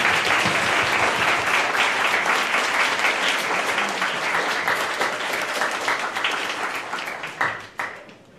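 Audience applauding, a dense, loud round of clapping that slowly tapers and dies away shortly before the end.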